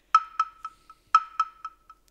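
A pitched, wood-block-like electronic tick sounding about once a second, each tick followed by three or four fading repeats about a quarter second apart, like a countdown timer sound effect.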